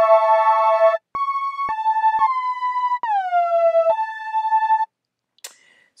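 Logic ES2 software synth lead of detuned square and pulse waves, playing a short phrase of held notes and small chords with portamento, some notes sliding down or up into pitch. Each new note clicks in with an abrupt attack.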